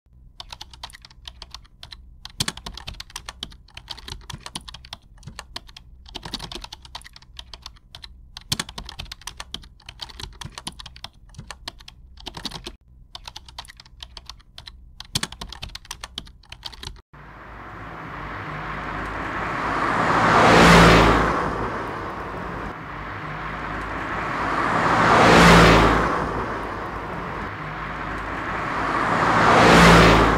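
A screwdriver clicks and rattles in a car's ignition lock cylinder as it is forced. About seventeen seconds in, this gives way to car engine and road noise that swells and fades three times.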